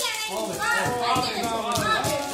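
Several voices talking and calling out over one another, children's voices among them.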